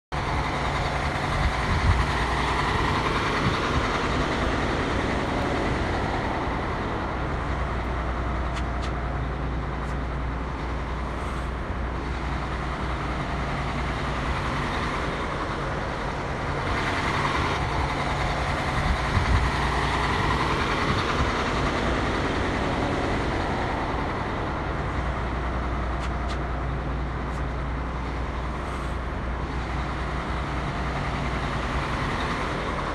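Coach bus diesel engine running with a steady low hum.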